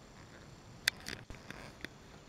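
A few faint, short clicks and crackles over a quiet background hiss. The sharpest comes a little under a second in, with smaller ticks after it.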